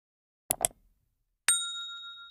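Subscribe-button animation sound effect: two quick clicks about half a second in, then a bell ding about a second later that rings on and slowly fades.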